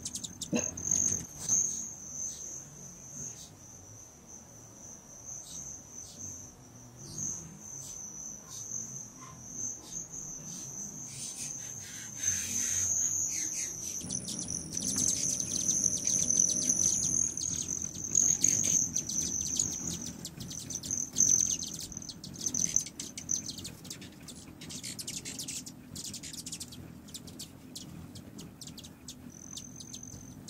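Hummingbirds flying around nectar feeders, with many short high chip calls and a low wing hum that grows stronger about halfway through as more birds arrive. A steady high-pitched tone runs under it until shortly before the end.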